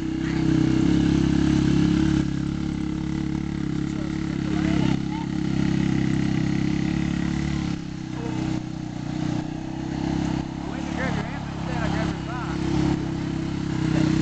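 Four-wheeler (ATV) engine running steadily at part throttle while towing a rider on a car hood, easing off for a moment about two-thirds of the way through.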